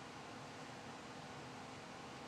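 Faint steady hiss with a low hum: quiet room tone.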